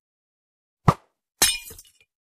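Edited-in impact sound effects over dead silence: a short sharp thump about a second in, then half a second later a longer, brighter crash that dies away over about half a second.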